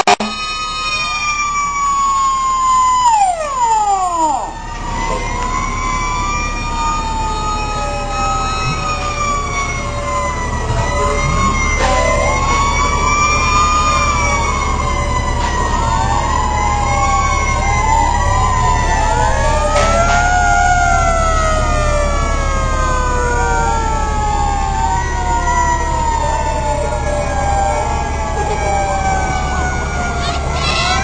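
Several fire truck sirens sound at once, their tones overlapping and slowly rising and falling. One winds down steeply about four seconds in. A low rumble runs underneath.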